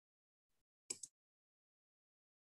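Near silence, broken by one brief, double noise about a second in.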